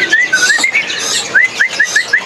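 White-rumped shama (murai batu) singing: a quick run of short, rising whistled notes, about five a second, with higher chirps over them.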